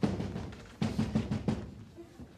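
A quick run of sharp percussive hits, about five in under a second, after a single hit at the start, sounding like a short drum fill.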